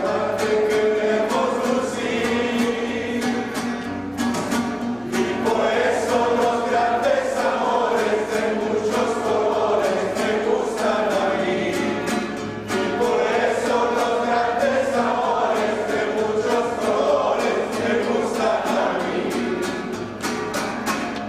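Music: a group of voices singing together over a steadily strummed string accompaniment.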